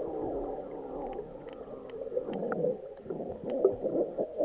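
Water heard through a camera's waterproof housing while submerged in a swimming pool: a muffled, wavering gurgle with a few faint clicks.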